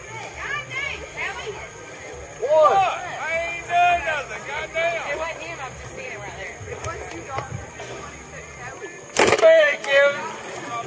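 Voices calling and talking, words not made out, with a single sudden loud knock near the end.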